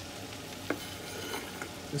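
Onions, peppers and diced chicken sizzling steadily in a large cast iron pan on high heat. A single light click sounds about a third of the way in.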